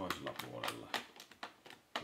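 Quiet, irregular key clicks of someone typing on a computer keyboard, a handful of separate keystrokes.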